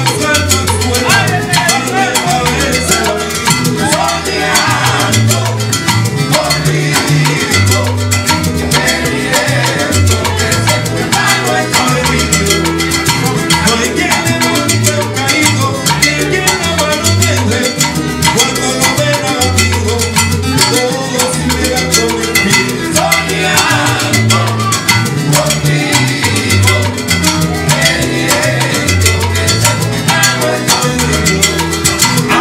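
A Cuban son band playing a salsa number live, with guitars, maracas, congas and an upright bass, over a steady dance beat.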